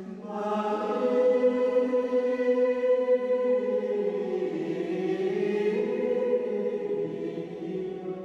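Choir singing a slow hymn in long held notes; a new phrase swells in just after the start, and the singing eases off near the end.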